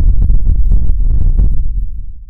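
Logo-reveal sound effect: a loud, deep bass rumble with faint ticks through it, fading away near the end.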